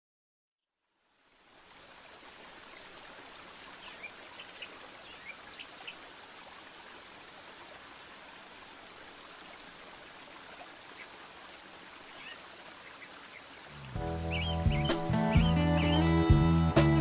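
After a second of silence, a steady rush of flowing water with birds chirping now and then. Music with guitar comes in loudly about two seconds before the end.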